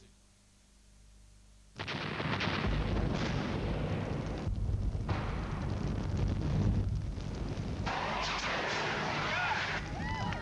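Near silence for the first couple of seconds, then a sudden loud, sustained din of explosion and blast sound effects with a deep rumble underneath.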